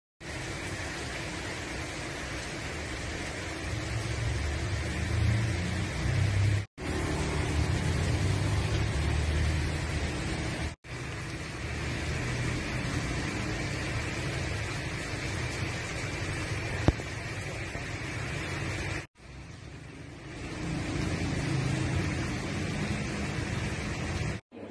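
Steady outdoor street ambience with road traffic noise and a low rumble. It drops out briefly three times, and there is one sharp click about two-thirds of the way through.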